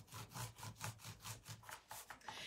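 Stiff paintbrush scrubbed quickly back and forth over a painted puzzle-piece surface while dry-brushing: faint, even scratching strokes, about six or seven a second.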